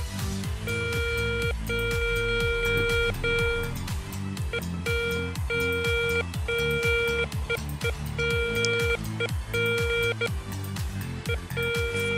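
Garrett ACE 250 metal detector with an NEL Tornado coil sounding a mid-pitched target beep over and over, about a dozen beeps of half a second to a second and a half each, as a Soviet 5-kopeck coin is moved over the coil. The detector is picking the coin up at about 37 cm. Background music with a plucked guitar beat runs underneath.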